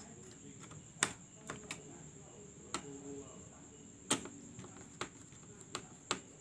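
A screwdriver tightening the small screws of a laptop CPU heatsink: a few sharp, scattered metal clicks of the driver tip on the screw heads, the clearest about a second in, just under three seconds in and about four seconds in.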